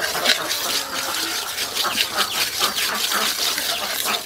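A metal ladle stirring and scraping through a bubbling, sizzling syrupy liquid in a metal wok: a steady dense crackle of small pops, with the ladle's clicks against the pan.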